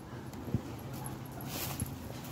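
Large stray dog whimpering, with a single thump about half a second in.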